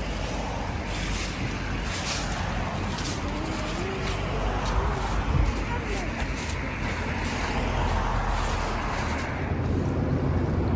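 Steady outdoor traffic noise with a low rumble, faint indistinct voices and a few light knocks.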